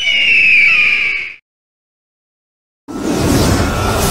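A single bird-of-prey screech sound effect, about a second and a half long, high and sliding slightly downward. After a short silence, about three seconds in, a sudden rushing swell with a deep low end begins the soundtrack music.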